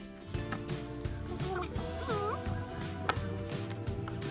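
Background music plays throughout. About halfway through a long-haired colorpoint cat gives a short meow that dips and rises in pitch.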